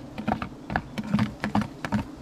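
Irregular clicks and knocks, several a second, as a knife cuts wild bee honeycomb out of a tree and the blade and comb knock against a plastic bucket held beneath.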